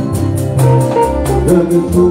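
Live Fuji band music with a fast, steady percussion beat over a bass line.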